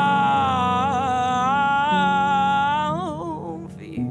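Indie rock song: a singer holds one long sung note with a wavering pitch over low, sustained guitar tones. The note breaks off about three and a half seconds in.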